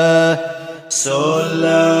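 Sholawat, Islamic devotional chant in praise of the Prophet, sung by a voice holding long, wavering notes; the line breaks off briefly just before the middle, and a hissed 's' about a second in starts the next phrase.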